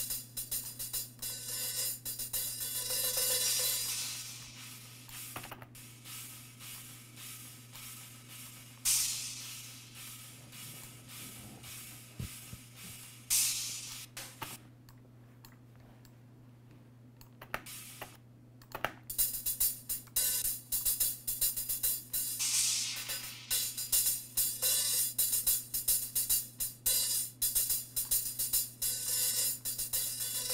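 Soloed hi-hat track from a recorded drum kit playing back as a busy run of strokes. Its brightness swells and fades as a boosted EQ band is swept through the highs. The playing thins out and goes much quieter for a few seconds about halfway through.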